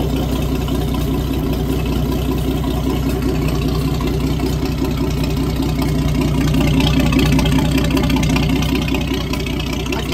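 Freshly rebuilt Chrysler Crown M47-S flathead six marine engine running steadily on a test stand, a little louder about seven seconds in.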